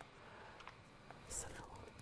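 Faint whispering by a woman, with one brief, louder breathy hiss about one and a half seconds in.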